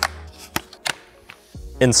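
A few sharp clicks, two of them close together a little past halfway: RAM sticks being pressed into a motherboard's memory slots, the slot latches snapping shut as each module seats.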